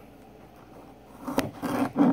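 Kitchen knife slicing garlic on a plastic cutting board. It is quiet at first, then comes one sharp knock of the blade on the board about one and a half seconds in, followed by light cutting and scraping.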